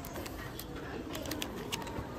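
Faint crinkles and light clicks of plastic packaging as reading-glasses packs are handled and slid on their peg hooks, over a low, steady shop background.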